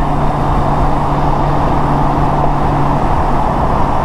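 Steady wind rush and road noise of a 2016 Honda Gold Wing touring motorcycle cruising at highway speed, heard through wind on the microphone, with the low, even hum of its flat-six engine underneath.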